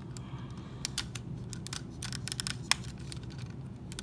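Hard plastic toy parts of a Transformers Menasor figure clicking and tapping together in irregular small clicks as fingers work pieces into alignment, with one sharper click about two-thirds of the way through.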